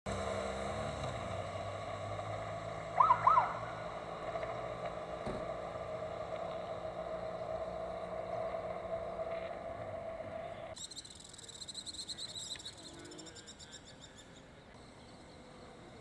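Outdoor street ambience on an empty road: a motorcycle engine drops away in pitch in the first second as it rides off, under a steady hum, with three loud quick chirps about three seconds in. After a sudden change near eleven seconds, the sound is quieter, with high rapid twittering for a few seconds.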